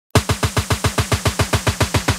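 Electronic kick drum roll from a drum machine, opening intro music: rapid even hits, about eight a second, each a low thump falling in pitch. It starts suddenly just after the beginning.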